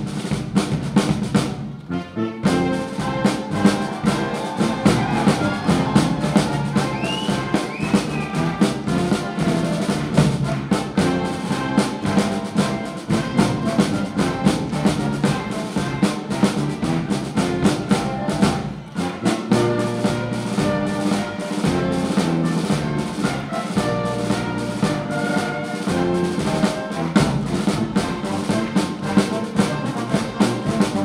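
Marine Corps party band playing an up-tempo number: trumpets, saxophones and a sousaphone over a drum kit, with a steady beat. After a short break about two seconds in, the full band comes in.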